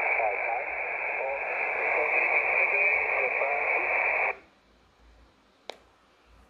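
Shortwave reception on upper sideband from a Xiegu X5105 transceiver's speaker: a distant station's voice, thin and narrow-band, in a bed of hiss on the 17 m band. The audio cuts off suddenly about four seconds in, and a single sharp click comes near the end.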